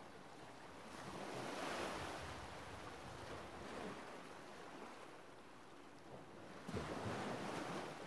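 Faint sea surf washing on a rocky shore, swelling and fading, with wind on the microphone.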